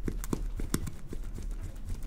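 Gloved fingertips pressing and squeezing a silicone pimple-popping practice pad, giving a quick irregular run of sharp clicks, several a second, as the filling is worked out of a hole.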